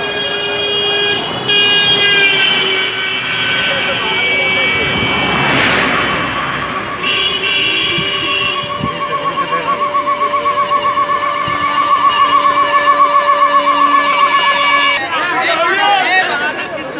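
Motorcade vehicle sirens and horns as a convoy drives up: steady horn tones at first, a brief rush of a vehicle passing about six seconds in, then a fast-warbling siren over steady horn tones from about seven seconds until shortly before the end.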